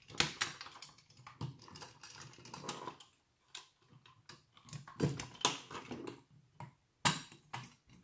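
Irregular small clicks, knocks and rattles of a mostly metal Siku 1:32 Brantner three-axle tipper trailer model being handled and tilted by hand, its parts and wheels knocking together and on a wooden tabletop, busiest a little after the middle.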